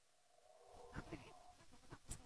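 Near silence, with a faint drawn-out tone and a couple of soft clicks about a second in.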